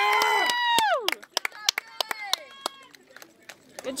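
A spectator's long, high-pitched cheering shout, held for about a second. Then come scattered hand claps and faint, distant voices.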